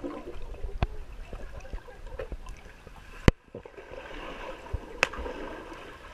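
Muffled swimming-pool water heard through a camera held underwater: a low, even wash of water noise with scattered sharp clicks, the loudest about three seconds in.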